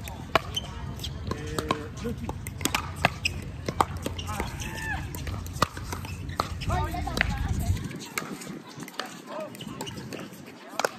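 A pickleball rally: the sharp, irregular pops of paddles hitting the plastic ball, several in quick succession, with voices talking in the background.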